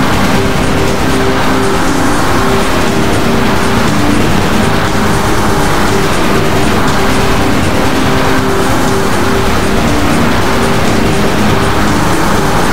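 A loud, harsh, distorted cartoon sound effect: a dense roaring noise with a steady buzzing tone under it, cutting in suddenly and holding at one level throughout.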